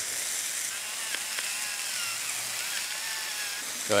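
Ground-beef patties searing on a hot Blackstone flat-top griddle: a steady sizzle.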